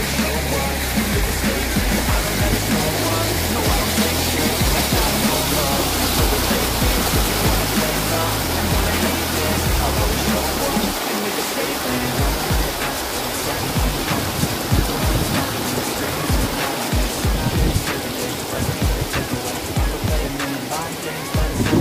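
A rap song's backing beat with a stepping bass line, which drops out about halfway through, over the steady rush of a waterfall pouring over rock.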